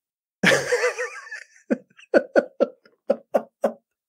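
A man laughing: a drawn-out, wavering laugh, then a run of short, evenly spaced 'ha' bursts, about four a second.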